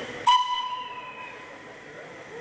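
Short toot of a narrow-gauge steam locomotive's whistle. It starts sharply about a quarter-second in, just as a hiss of steam stops abruptly, and fades away within about a second.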